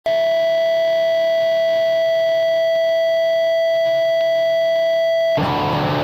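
A steady tone held at one unchanging pitch and level for about five seconds, cut off suddenly near the end as electric guitar playing begins.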